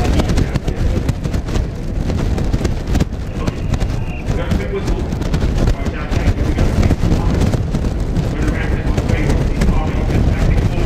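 Polo ponies' hoofbeats on grass turf as they jostle and then gallop after the ball, a run of irregular thuds over a steady low rumble, with indistinct voices in the background.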